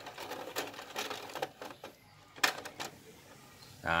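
Pioneer 3-disc multi CD changer's disc tray mechanism: its motor and gears run as the tray slides out, ending in two sharp clicks about two and a half seconds in as the tray stops fully open. The mechanism runs very smoothly.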